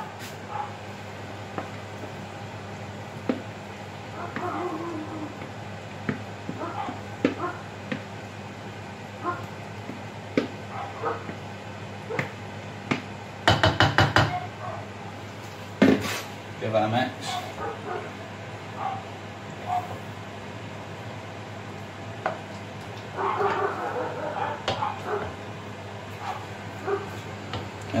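Utensils knocking and scraping in a stainless steel frying pan as marinated chicken pieces are tipped in and stirred into fried onions and spices, with scattered clicks, a quick rattle about halfway through and a sharp knock soon after.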